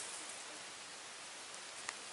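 Faint, steady outdoor background hiss with no distinct strikes, and a single light click near the end.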